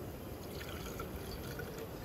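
White wine being poured from a glass bottle into a stainless steel insulated cup: a faint trickle of liquid filling the cup.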